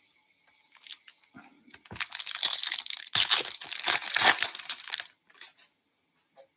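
A foil 2021-22 Upper Deck Ice Hockey hobby pack being torn open and its wrapper crinkled, in crackly stretches starting about a second in and dying away shortly before the end.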